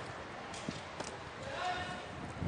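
Faint background voices with a few light knocks.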